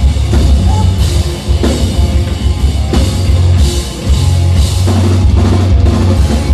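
A pop-punk/post-hardcore rock band playing loudly live: drum kit with repeated cymbal crashes, electric bass and guitars.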